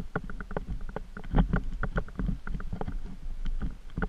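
Body-worn camera moving along a dirt trail: irregular thumps and crunches, a few a second, over a low rumble of handling and movement noise.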